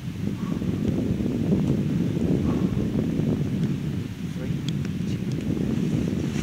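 Wind buffeting a camera microphone: a steady low rumble that comes up at the start and holds.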